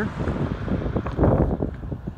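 Wind blowing across the microphone: an uneven low rumble that swells in a gust a little past halfway.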